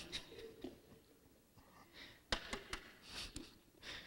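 Three quick, sharp taps about two and a half seconds in, from eggs and other ingredients being handled at a metal mixing bowl, with soft breaths around them.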